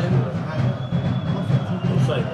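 Steady low rumbling background noise, with a faint thin high tone running for about a second in the middle.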